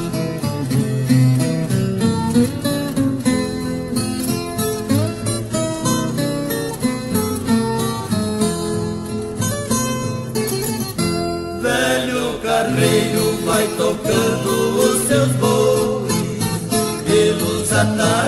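Instrumental passage of a Brazilian música caipira song: plucked acoustic strings, guitar and viola caipira, playing a steady melody with accompaniment.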